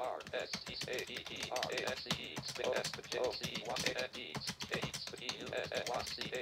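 Fast typing on a computer keyboard, with many key clicks in quick succession. Short snatches of a fast synthetic screen-reader voice come between the keystrokes about every half second, echoing what is typed.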